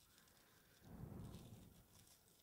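Near silence: room tone, with a faint, soft, indistinct sound through the middle.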